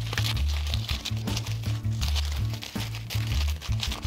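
Background music with a steady bass line, over the crinkling rustle of tissue paper being pulled apart and fluffed into a paper flower.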